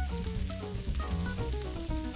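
Diced celery and sliced mushrooms sizzling in hot olive oil in a frying pan, stirred and scraped with a silicone spatula. Soft background music plays under it.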